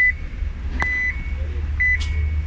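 Electric car's cabin warning chime after the gear selector is worked: a high steady beep repeating about once a second, of the kind given in reverse, with a click from the selector about a second in.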